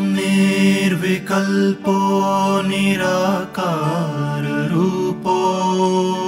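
A sung devotional mantra chant: an ornamented vocal line that bends and glides between held notes over a steady sustained drone.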